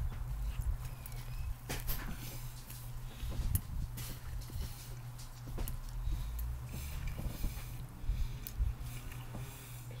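A man biting into a sandwich and chewing it close to the microphone: irregular wet mouth clicks and smacks, over a low steady hum.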